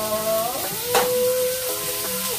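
A man's voice drawing out the last syllable of a called-out announcement into a long sung note that bends down and then holds steady, with one sharp knock about a second in.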